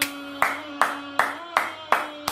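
One person clapping his hands in a slow, steady rhythm, six claps in two seconds.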